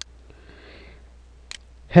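A person's short, faint breath in through the nose, between two sharp computer-mouse clicks, one at the start and one about a second and a half in, over a steady low electrical hum.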